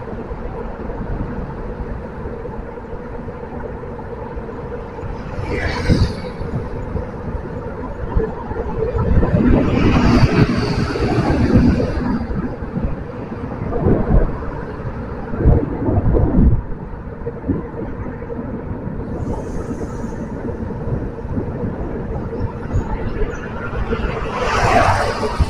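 Steady engine and road noise of a car driving, heard from inside the car. The noise swells louder a few times, most around the middle.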